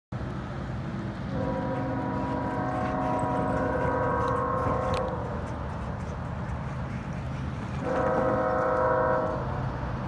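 Multi-chime air horn of an approaching CSX freight locomotive, a GE ES44AH, sounding one long blast of about four seconds and then a shorter blast of about a second and a half, over a steady low rumble.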